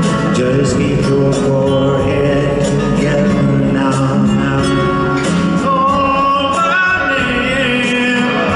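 Live band music: acoustic guitar with the band, and a male voice singing, clearest from about the middle on. Recorded from the audience in a large arena.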